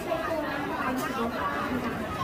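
Background chatter: several people talking at once, their voices overlapping with no single clear speaker.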